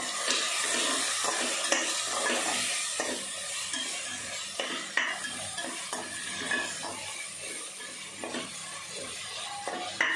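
A slotted metal spatula stirring and scraping vegetables frying in a metal pot, with a steady sizzle under repeated irregular scrapes and clinks of metal on metal. The sharpest clinks come about two seconds in and about halfway through.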